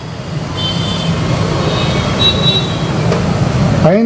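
A loud, steady rumbling noise that swells slightly and cuts off suddenly, with faint high-pitched tones in the middle.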